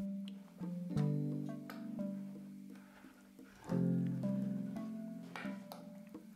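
Background music, with chords struck about a second in and again near four seconds in, each left to ring and fade.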